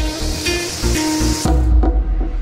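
Drill press spinning a copper pin against coarse grit-100 metal sandpaper: a gritty hiss over the steady hum of the motor, with the hiss stopping about one and a half seconds in. Background music plays underneath.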